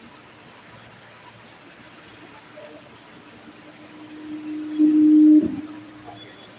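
Public-address microphone feedback: a single low, steady tone that swells over a few seconds, becomes loud near the end, then cuts off suddenly.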